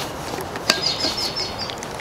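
A bird's rapid trill of evenly repeated high notes lasting about a second, beginning right after a sharp click about two-thirds of a second in.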